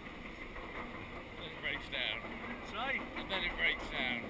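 Roller coaster train climbing the lift hill: a steady low rumble with wind on the camera's microphone, and indistinct riders' voices from about one and a half seconds in.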